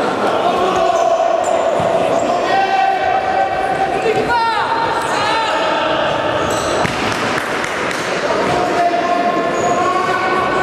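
Indoor futsal play: shoes squeaking on the sports-hall floor as players run and turn, with knocks of the ball being kicked and hitting the floor, all echoing in the large hall. Several squeaks slide in pitch about four to five seconds in.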